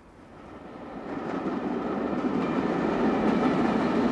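Passenger train passing, its rumble growing louder over the first two seconds and then running steadily.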